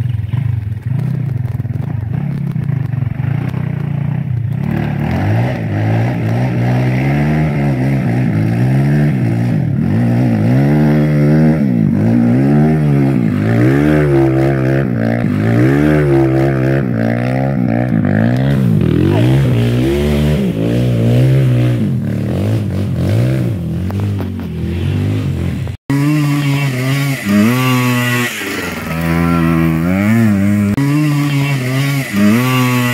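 Trail motorcycle engine revving hard and repeatedly, its pitch rising and falling every second or so as the bike struggles for grip on a muddy climb. The sound cuts out for an instant near the end, then the revving resumes.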